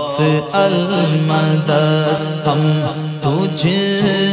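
Sung Urdu devotional manqabat: male voices chanting over a steady hummed drone, the backing voices repeating 'Sayyidi'.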